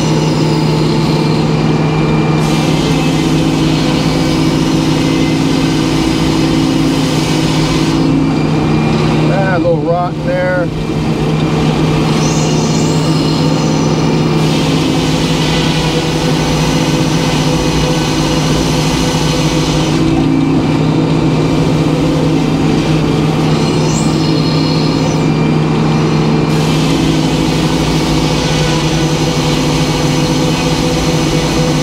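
Circular sawmill running under power as its large circular blade cuts lengthwise through a big white pine log, a steady machine drone with the hiss of the cut rising and falling. About ten seconds in there is a brief wavering whine and a slight dip in the sound.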